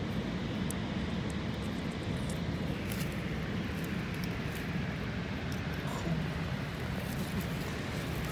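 Steady low rumble with a faint hum, like a distant engine, with a few faint clicks.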